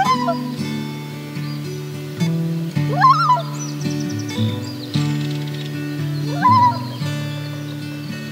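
Acoustic guitar music with three short common loon calls laid over it, about three seconds apart. Each call glides up and then settles on a held note.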